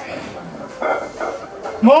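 Men shouting encouragement at a lifter straining through a heavy barbell squat: a short loud burst about a second in, then a man's rising shout of "come on" near the end, over background music.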